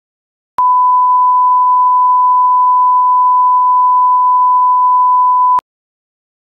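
Broadcast line-up reference tone: a single steady pure pitch at constant loudness, starting about half a second in and cutting off sharply about five seconds later. It marks the head of a video master, played over the slate ahead of the countdown leader.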